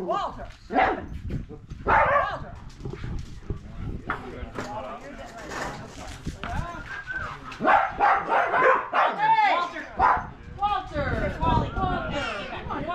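Dogs barking, mixed with people's voices.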